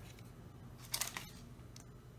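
Quiet handling noise of a frying pan and its glass lid: a quick cluster of light clicks about a second in and one fainter click near the end.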